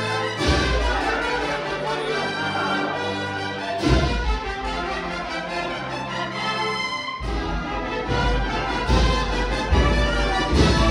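A brass band playing a slow processional march: held brass chords, with a bass drum struck every few seconds.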